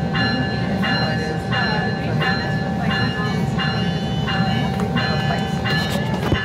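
Train bell ringing in a steady repeated strike, about one and a half strokes a second, over the low rumble of the railcar's engine as the train starts to pull out of the station.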